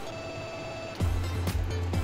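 Background music: a held electronic note for about a second, then a bass-heavy beat with regular drum hits about twice a second.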